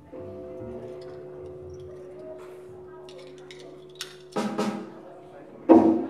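Live rock band playing quietly: a sustained chord held for about four seconds, then a few sharp drum hits, the loudest near the end.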